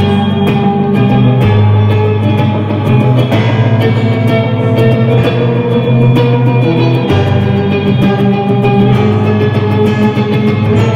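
Electric guitar picked and strummed live with keyboard accompaniment, an instrumental stretch without singing. A held low bass note underpins it and changes about a second and a half in and again about seven seconds in.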